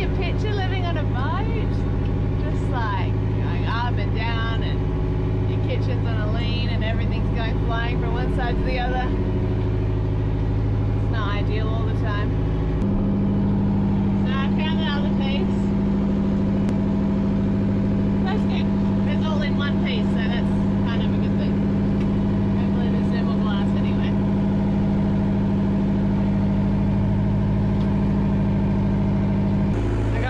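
A steady low mechanical hum running throughout, its pitch balance stepping up about halfway through, under indistinct voices.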